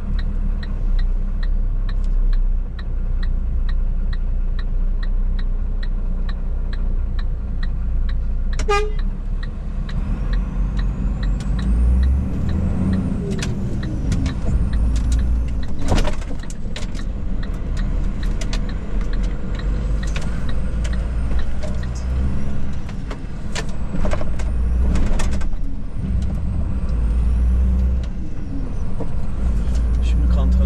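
Iveco truck's diesel engine running, heard inside the cab while driving, with a turn-signal ticking steadily for about the first ten seconds. A few sharp knocks come later as the cab jolts.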